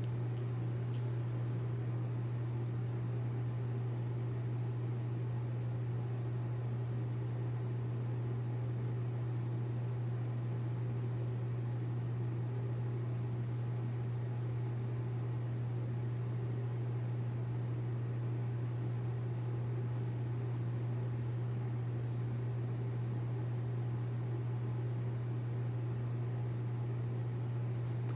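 Steady low electrical hum with an even hiss over it, unchanging throughout, from a running household appliance.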